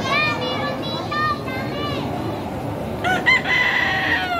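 A rooster crowing twice: a first crow of short rising-and-falling notes, then a second starting about three seconds in, ending in a long held note that drops away at the close. A steady background rush runs underneath.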